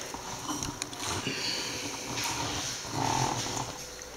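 Handling noise from a hand-held camera being moved: faint rustles and small clicks and knocks, with a couple of short low murmurs.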